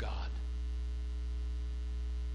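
Steady electrical mains hum, a low drone with a faint stack of higher buzzing overtones, unchanging throughout.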